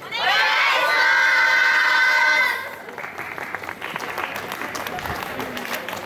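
A yosakoi dance team shouting together in one loud held call for about two and a half seconds, then crowd noise with scattered claps.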